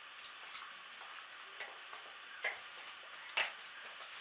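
Wood fire crackling in a fireplace: a faint steady hiss with a few irregular sharp pops, the loudest near the end.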